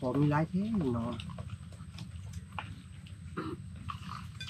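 Speech: a voice talking for about the first second, then a lower background with a few faint clicks and a brief voice again near the end.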